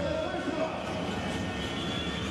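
Steady crowd noise in an indoor basketball arena, an even din with no distinct single event standing out.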